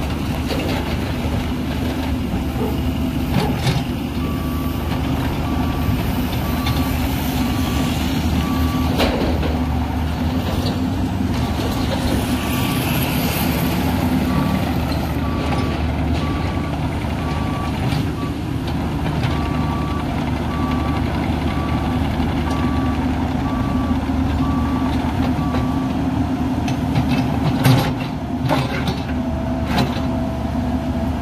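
Caterpillar 305.5E2 CR mini excavator's diesel engine running steadily while the machine works its hydraulics. Its motion alarm beeps at an even pace from about four seconds in until a few seconds before the end, and there are a few short knocks near the end.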